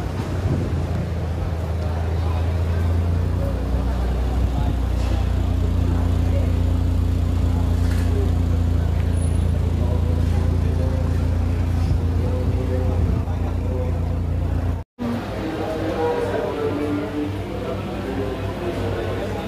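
A motor vehicle engine running close by, a steady low hum under street noise. The sound cuts out suddenly about fifteen seconds in, and voices and chatter follow.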